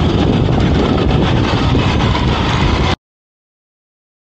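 Loud, steady rumbling road noise of electric skateboard wheels rolling on asphalt, mixed with wind on the microphone. It cuts off abruptly to dead silence about three seconds in.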